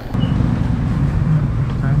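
A motor vehicle engine running: a steady low rumble that comes in suddenly at the start.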